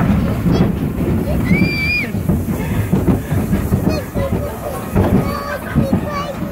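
Small roller coaster train rumbling and rattling along its track as it leaves the station, with a brief high squeal about one and a half seconds in.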